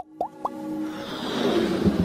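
Animated logo intro sound effects: two short rising bloops in quick succession, then a whoosh that swells up toward the start of electronic music.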